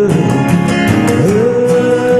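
Music: acoustic guitar strumming under a long held melody note that slides up about a second in and then holds.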